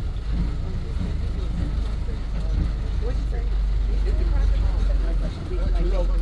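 Open-sided safari game-drive vehicle's engine running with a steady low rumble, briefly dipping about five seconds in.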